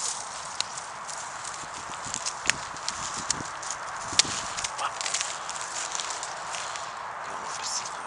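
Footsteps through wet leaf litter and dead grass at the edge of floodwater, with irregular sharp clicks and cracks of twigs, over a steady hiss.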